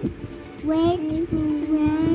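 A child's voice humming or singing wordlessly in long held notes at a steady pitch, with a few soft knocks underneath.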